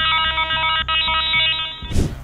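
Glitching audio from a malware-infected PC as it crashes: a harsh, stuttering electronic drone of many steady tones, like a stuck sound loop, that cuts off suddenly just before the end.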